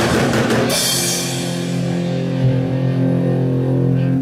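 Rock band ending a song: drum kit and cymbals crash in the first moment, then a final electric guitar and bass chord rings out steadily.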